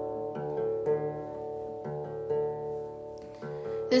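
Acoustic guitar played softly, single notes plucked about every half second over strings left ringing.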